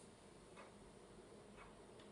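Near silence: room tone with two faint ticks about a second apart.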